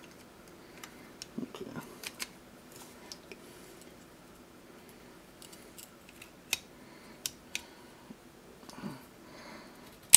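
Small metal parts of an airsoft pistol slide being handled as the recoil spring and guide are forced into it by hand: faint scattered clicks and scrapes, with a few sharper clicks about two seconds in and again past the middle.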